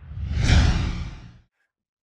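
A whoosh sound effect with a deep rumble under it, from a channel logo animation. It swells to a peak about half a second in and fades away over the next second.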